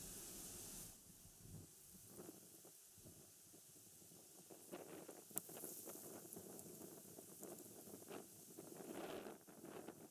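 Near silence: faint outdoor background noise with a few soft rustles and a faint click about halfway through; no bird call.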